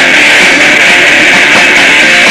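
Punk rock band playing live: electric guitar and drums, loud and dense, in an instrumental stretch without vocals.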